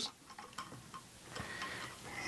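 A few faint light ticks, then a soft scraping from about halfway through, as a wooden work platform is slid over a sewing machine's arm and lowered toward its table.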